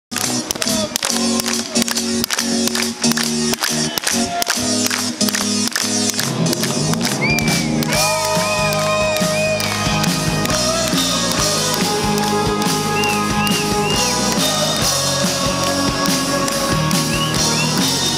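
Live rock band playing an instrumental passage, recorded from the crowd: a run of hard drum and band hits at first, then a lead melody over sustained chords comes in about seven seconds in.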